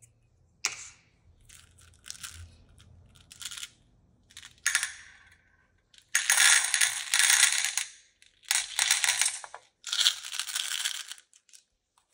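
Small plastic beads poured from a plastic cup into a metal muffin tin, clattering and rattling against the metal in three pours in the second half, after scattered light clicks of the beads shifting in the cup as it is handled.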